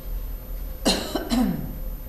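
A person coughing: two sudden bursts about half a second apart, the first the louder.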